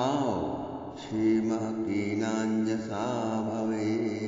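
Devotional mantra chanting: a voice sliding down at first, then holding long steady notes.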